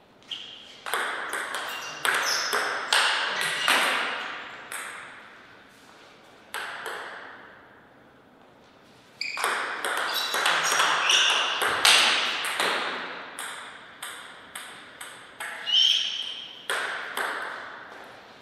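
Table tennis ball being hit back and forth, clicking sharply off the rackets and the table in quick trains, with a short echo after each hit. There are two rallies a few seconds apart, then a few more hits near the end.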